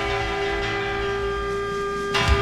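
Electric blues band holding the song's final chord: one long, steady sustained chord without breaks.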